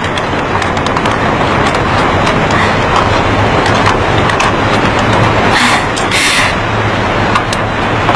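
Steady road traffic noise with a low hum, swelling briefly with a hiss about six seconds in.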